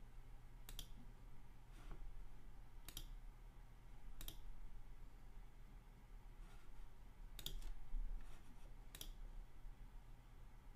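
Faint, sharp clicks of a computer mouse, about six spaced irregularly, over a low steady hum.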